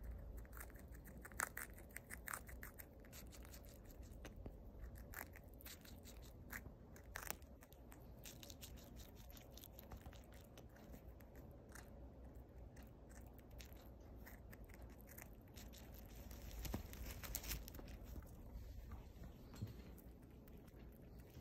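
Flying squirrel gnawing and chewing sweet potato leaf stems: faint, irregular crisp clicks and crunches, in quicker flurries near the start and near the end.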